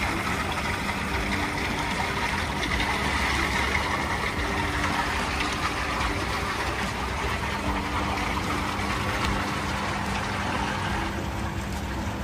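A swim spa's jets running: steady churning water with a low hum from its pump.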